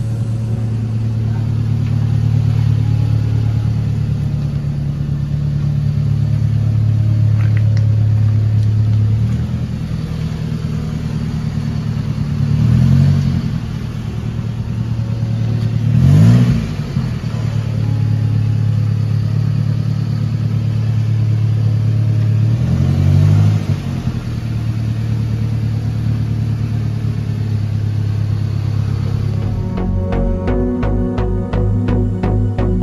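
A car engine running at idle, revved briefly three times, each rev rising and falling in pitch over about a second.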